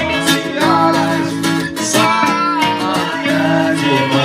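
A live band playing, with acoustic and electric guitars strummed under a male voice singing.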